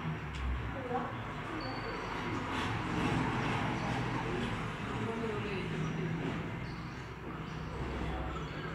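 Sound of an indoor futsal match played back through a screen's speaker: indistinct shouts from players and the bench over a steady hall noise, with a few sharp knocks about two and a half to three seconds in.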